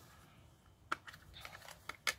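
Faint plastic clicks from a stamp ink pad's case being handled and its lid opened: one sharp click about a second in, then a few lighter ticks near the end.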